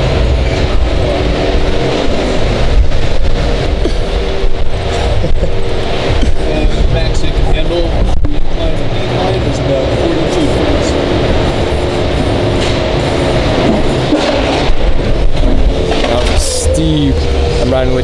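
Low rumble of a 2018 Jeep Wrangler Rubicon's 3.6-litre V6 at crawling speed, heard from inside the open-topped cabin. A crowd murmurs all around.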